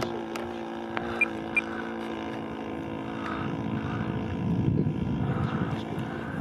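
Internal-combustion engine and propeller of a Hangar 9 P-47 Thunderbolt radio-controlled model in flight, a steady drone.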